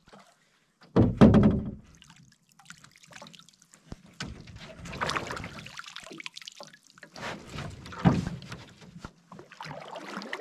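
Canoe being pushed off and climbed into: knocks and thumps against the hull, the loudest about a second in and again near eight seconds, with water dripping and splashing around it.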